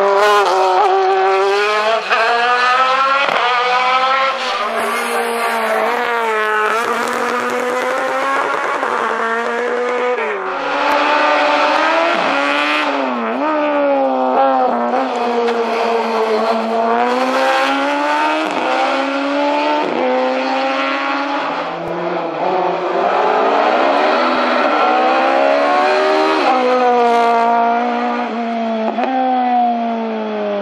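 Racing car engines under hard acceleration, one car after another. Each engine revs up through the gears, climbing in pitch and dropping sharply at every upshift.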